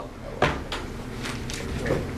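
A sharp wooden knock about half a second in, then a few fainter knocks and handling noises, like objects being set down or moved on a desk.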